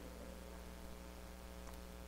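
Low, steady electrical mains hum with a faint hiss.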